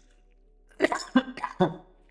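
A man coughing: a quick run of several short coughs starting about a second in.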